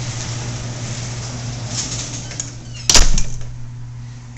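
Steady low hum and hiss of a handheld camcorder recording, with one sharp loud knock about three seconds in, typical of the camera being bumped or stopped.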